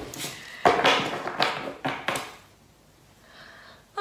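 Spilled tarot cards being gathered up and handled: papery rustling with a few light knocks in the first two seconds, then it goes quiet.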